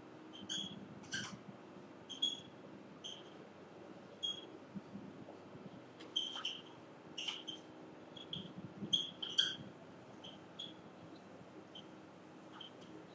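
Writing on a board: a string of short, faint, irregular high-pitched squeaks from the writing tool, over a low steady room hum.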